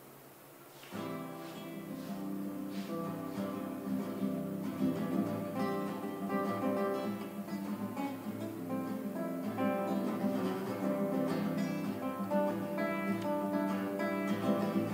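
Acoustic guitar begins playing about a second in, picking out an instrumental introduction of ringing chords and single notes that grows a little louder as it goes.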